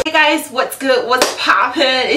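A woman's voice calling out a greeting, with one sharp smack about a second in.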